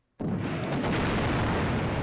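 Stream alert sound effect: an explosion-like burst of noise that starts suddenly just after the start and holds steady and loud for nearly two seconds, heaviest in the low end.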